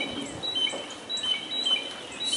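Outdoor birdsong: short, high, whistled notes repeating every half second or so.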